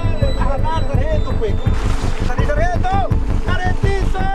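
Men shouting urgently to each other in a small fishing boat while hauling on a line, over the steady run of the boat's motor and wind on the microphone.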